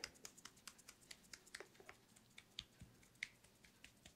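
Faint, irregular light clicks and taps, several a second, from handheld wooden massage tools being worked and handled.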